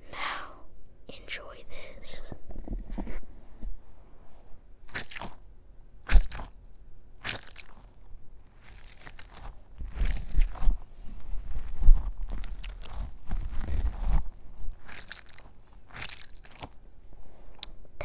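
Close-up crunching and crackling ASMR noises right at a furry-windscreen microphone, in irregular sharp strokes. Heavy low rumbles and thumps come between about ten and fourteen seconds in, as from the fur cover being rubbed or handled.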